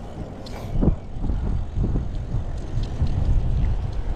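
Wind rumbling on the microphone of a cyclist's action camera while riding, with a brief louder gust about a second in.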